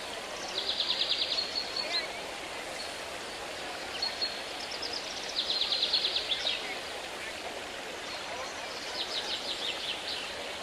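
A songbird singing a rapid high trill three times, each about a second long and several seconds apart, over a continuous murmur of distant voices.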